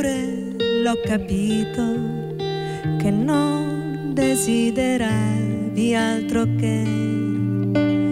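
A song played live on acoustic and electric guitar, with a woman singing over the guitars.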